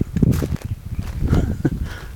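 Footsteps crunching irregularly on loose crushed-stone gravel.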